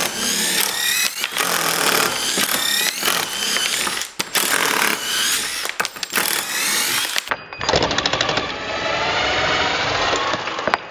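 Two DeWalt cordless impact drivers, a 20 V DCF787 and a 12 V DCF801, running in repeated bursts as screws are backed out of a wooden beam: each burst a rising motor whine over the rapid rattle of the impact hammer.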